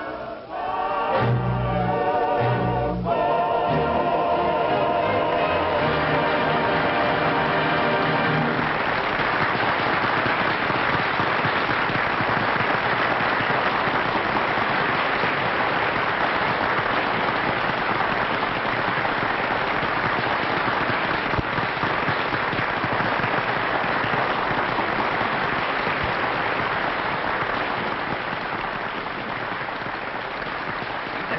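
Singers with an orchestra end a song on long held, wavering notes; about eight seconds in, an audience breaks into applause that goes on steadily, easing slightly near the end.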